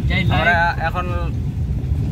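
A car running along a rough lane, heard from inside the cabin: a steady low rumble of engine and road noise, with a person's voice talking over it for about the first second.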